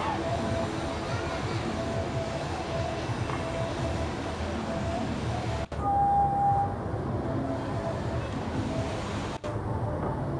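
Live traditional Minangkabau ensemble music heard through a PA from among the crowd: drumming under a held, wavering melody line, with a dense rumble of amplified sound and crowd noise. The sound drops out for a split second twice, once a little past halfway and once near the end.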